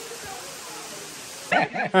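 Steady, even rushing noise of the outdoors with faint distant voices in it; about three-quarters of the way through, a man starts talking.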